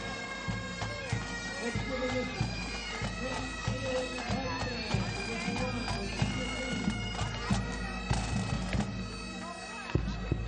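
Pipe band marching and playing: bagpipes sounding a tune over their steady drones, with snare and bass drum beats keeping time.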